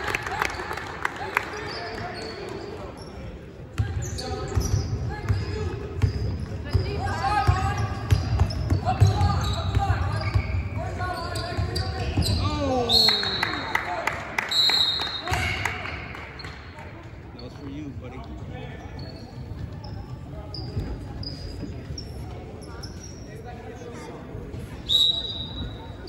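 A basketball bouncing on a hardwood gym floor during play, with players and spectators calling out. Short high squeaks and tones come and go through it.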